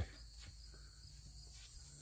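Crickets chirring in a steady, high-pitched background chorus, with a faint low hum beneath.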